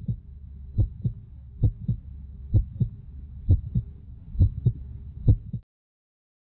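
Heartbeat sound effect: seven double 'lub-dub' thumps, about one beat every 0.9 seconds, over a low hum, cutting off suddenly near the end.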